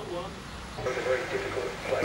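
A man's voice, quiet and broken, with hesitant sounds in between, over a low steady hum.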